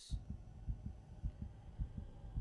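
Low, dull thumps at several a second over a faint steady hum: the opening of a music video's soundtrack as it starts playing.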